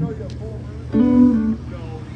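A live band's amplified gear idling between songs: a low steady amplifier hum, with a single held guitar note about a second in.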